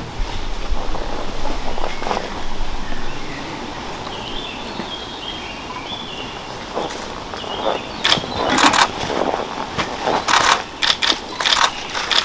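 Outdoor forest ambience with faint high whistling notes from a bird in the middle. In the last few seconds there are irregular bursts of rustling and shuffling close to the microphone, from people moving and handling things.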